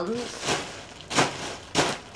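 Plastic packaging bag crinkling as it is handled, in three short rustles.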